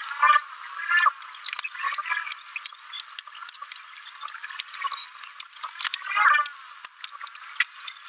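Plastic orchid pots handled while a soldering iron melts holes in them: many small sharp clicks and crackles, with brief snatches of a thin, high-pitched voice. The sound is tinny, with no low end at all.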